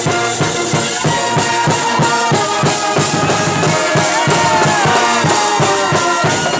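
College pep band playing live: trumpets, trombones and other brass playing a tune together over a steady drum beat, with some sliding notes in the brass.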